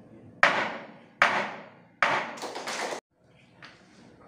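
Wooden gavel struck on a desk three times, evenly spaced, each knock ringing on in the room before the next. They are the ceremonial gavel strikes that formally seal the swearing-in of an official.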